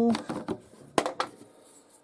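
A few short, sharp clicks and taps of a small plastic measuring pot being picked up and handled, the loudest about a second in.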